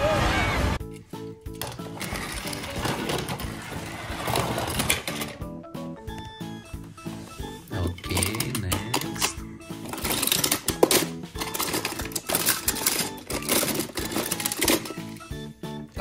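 A film soundtrack cuts off about a second in, giving way to background music over the repeated clicking and clattering of die-cast toy cars being rummaged in a plastic storage bin.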